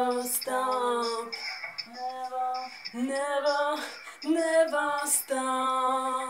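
A woman singing a string of long held notes in a pop song, over a synth backing track with two short cymbal hits.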